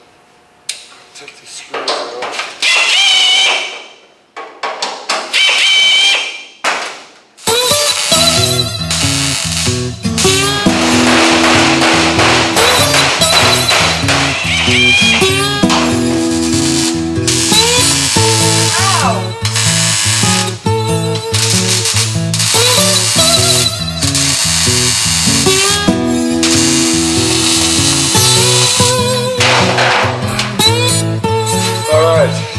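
A few short bursts of MIG welding, stopping and starting. Then, from about seven seconds in, loud background music with guitar and a steady beat.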